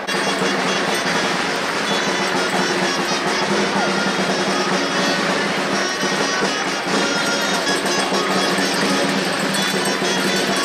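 Traditional Spanish folk music for a danced villancico (Christmas carol), with steady held notes, coming in suddenly at the start.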